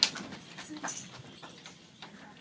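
Scattered light knocks and shuffling from a group of young children getting to their feet on a wooden floor, with a sharp knock right at the start and another about a second in.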